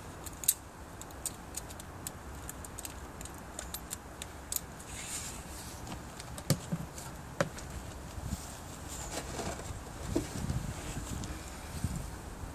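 Ratchet strap being fastened and tightened: irregular metallic clicks and jangles from the steel ratchet buckle, with handling noise in between.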